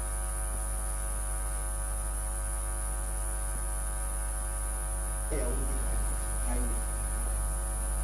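Steady electrical mains hum and buzz with a high whine above it, unchanging throughout; a faint, muffled voice comes in briefly about five seconds in.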